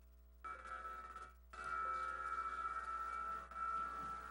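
Opening music of the played documentary video: a sustained high note with overtones that comes in about half a second in and holds, with brief breaks about a second and a half in and again near the end.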